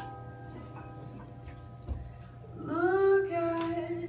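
Live jazz ballad: sustained stage-piano chords ring out and fade. About two and a half seconds in, a young female singer comes in with a note that slides up and is held.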